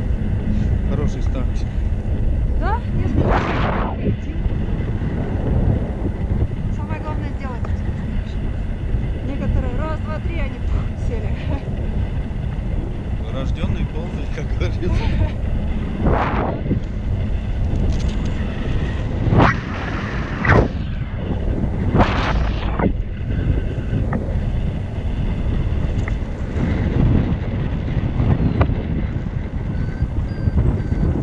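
Wind buffeting a camera microphone from the airflow of a tandem paraglider in flight: a steady low rumble with several short louder gusts, a cluster of them past the middle.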